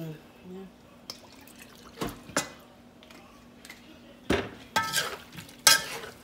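About six sharp clinks and knocks of kitchenware, some briefly ringing: a glass sauce bottle set down on the counter and a metal spoon against a metal cooking pan. A faint steady hum runs underneath.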